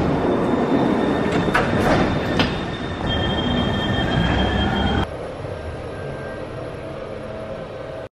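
Metro train running on its rails: a loud rumble with a few sharp clicks, then a high steady wheel squeal. About five seconds in, the sound drops abruptly to a quieter, steady hum.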